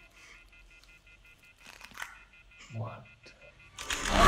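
Horror film soundtrack played from a laptop: a faint, rapid, pulsing electronic beep at a few steady pitches. There are a couple of short noises about two seconds in and a brief rising sound near three seconds.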